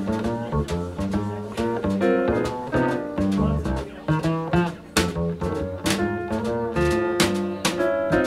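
Instrumental jazz passage from a trio of electric piano, double bass and drum kit, with piano chords over a walking bass line and cymbal and drum strikes throughout.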